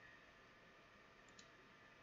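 Near silence: room tone, with one faint computer mouse click about one and a half seconds in.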